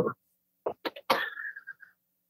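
A person sneezing once: a few quick catches of breath, then one sharp sneeze about a second in that trails off.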